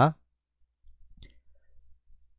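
A man's word ends right at the start, then near quiet with a faint low hum and a few faint, short clicks about a second in.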